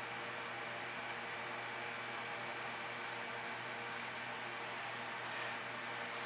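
Steady faint hiss with a low, even hum: background noise with no distinct event standing out.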